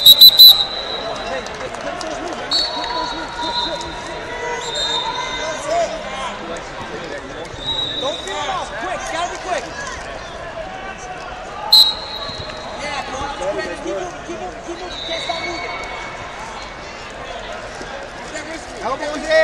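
Referee's whistle blasts in a busy wrestling gym: a loud shrill blast right at the start and another about twelve seconds in, with several fainter whistles from other mats. Spectators' voices and chatter run underneath.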